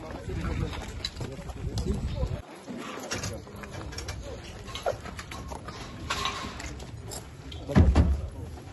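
Outdoor field noise from a handheld video of a group on foot over rubble: a low rumble, scattered footsteps and distant voices, with a sharp thump near the end.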